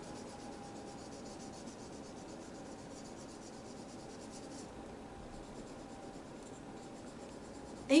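Felt-tip marker rubbing back and forth on a plain wooden popsicle stick as it is coloured in green: faint, quick, repeated scratching strokes that grow fainter about halfway through.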